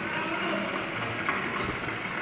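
Steady room noise of a large hall, a low even hiss, in a pause between spoken sentences.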